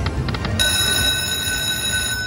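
Slot machine's electronic bell chime: a few quick clicks as the last reels stop, then a steady bell-like ringing from about half a second in. It is the machine signalling a winning spin, three owl symbols lined up.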